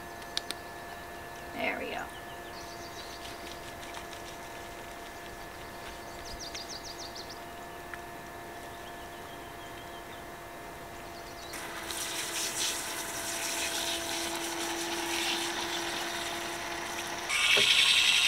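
Portable battery camp shower pump (Flextail Max Shower) running at low speed with a steady hum. Water spray hiss joins about two-thirds of the way in as the water is sprayed over a dog, and near the end the pump jumps to a louder, higher speed.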